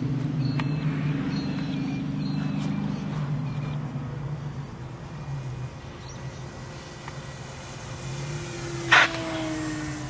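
Brushless electric motor and propeller of a foam RC Spitfire model in flight, a steady drone that weakens after about four seconds, then a tone sliding slowly down in pitch as it passes. About nine seconds in there is one short loud noise.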